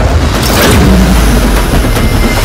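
Loud cinematic title-reveal sound effect: a deep rumbling whoosh that swells about half a second in, over a heavy bass drone.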